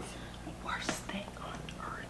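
A person whispering briefly and quietly, about a second in.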